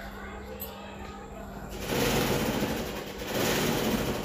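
Tamarind and dried-plum syrup boiling hard in a steel pot on a gas stove: a steady bubbling hiss that comes in about two seconds in.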